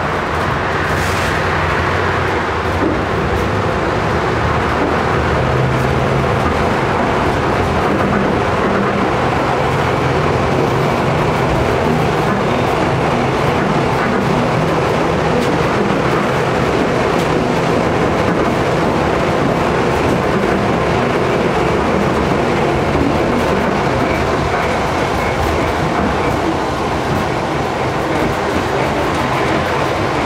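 Tram running along its track, heard from inside: steady rolling noise of steel wheels on rail with a low hum from the drive.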